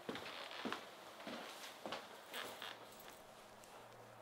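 Soft footsteps, about one every half second, growing fainter toward the end.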